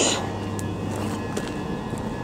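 Steady electric hum from a stationary electric multiple-unit train at the platform, with faint higher whining tones over it. A brief hiss at the very start and a few faint scattered clicks.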